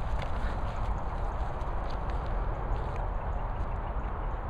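Steady outdoor background noise on a handheld microphone: a low rumble with a hiss over it, and a few faint ticks.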